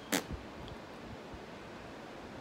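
Faint, steady background hiss of open-air ambience, with one short click just after the start.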